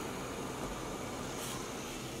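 Steady low background hiss with no distinct events.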